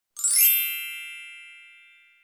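A bright, shimmering chime sound effect for a sparkling logo animation. It swells up within about half a second, then rings out and fades away over the next second and a half.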